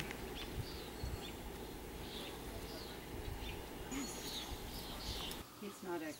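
Steady rush of floodwater still running down a creek after a flash flood, with a few faint bird chirps over it. The rush cuts off suddenly near the end.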